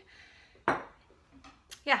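A ceramic coffee mug is set down on a hard surface with one sharp clink about two-thirds of a second in.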